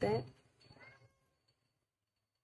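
A woman's voice finishing a word, then a faint, short rising sound just under a second in, then near silence.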